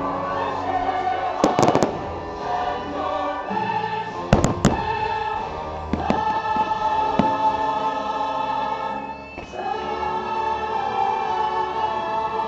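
Fireworks show music with a choir holding long notes, and firework shells going off over it: a couple of bangs about a second and a half in, then a sharper cluster around four and a half seconds in, the loudest moment.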